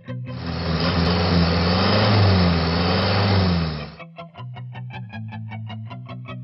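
A vehicle engine revving for about three and a half seconds, its pitch rising and falling, then cutting off sharply. Guitar-led pop music comes back in about four seconds in.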